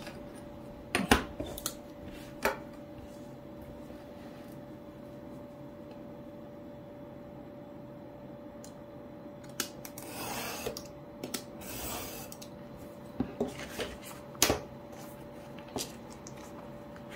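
Snap-off utility knife drawn along a steel ruler, slicing through a stack of diary paper in two scraping strokes near the middle. Sharp clicks and knocks of the ruler and knife being set down on the cutting mat come before and after, over a faint steady hum.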